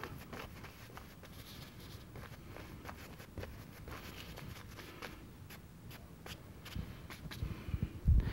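A brush dabbing and scrubbing thick oil paint onto canvas: faint, irregular taps and short scrapes, with a few louder low knocks near the end.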